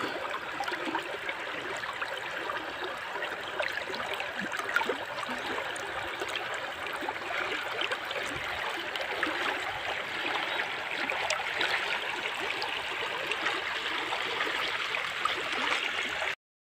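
Swift-flowing river current rushing and gurgling close to the water's surface: a steady wash of water with small splashes throughout.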